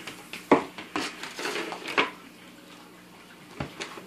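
Sticky hand toys smacking and knocking on a wooden tabletop: a few separate sharp smacks, the loudest about half a second in, then others about one and two seconds in and a quick pair near the end.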